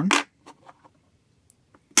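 A few faint clicks, then one sharp click near the end as a silver Peace dollar is set down on the stainless steel platform of a digital pocket scale.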